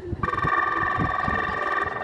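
Arena signal bell ringing steadily, starting a moment in and holding on: the judges' bell of a show-jumping ring.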